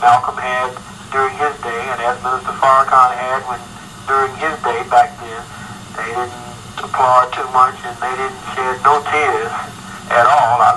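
Speech only: a voice talking steadily with a thin, narrow, radio-like sound.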